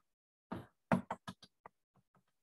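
Chalk tapping and scraping on a blackboard as block capital letters are written: a quick run of about seven short taps over a second or so, starting about half a second in.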